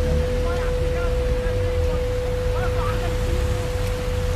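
Steady rushing noise of rain and floodwater in a flooded street, with a single steady tone held throughout and faint voices in the background.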